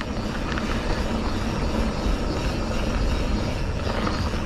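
Mountain bike rolling down a dirt singletrack: a steady rush of wind on the camera microphone mixed with the rumble of the tyres on the dirt.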